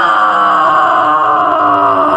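A person's voice holding one long, loud cry on a steady, slightly falling pitch.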